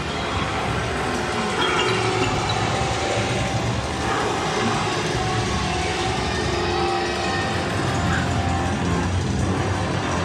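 Loud scare-zone soundtrack: a steady low rumble under sustained music tones.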